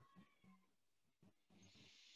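Near silence: faint room tone through an online-call microphone, with a very faint, brief sound at the very start that cannot be made out.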